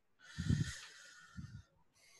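A person's breath rushing on a microphone held close to the mouth, lasting over a second, with two low puffs about a second apart.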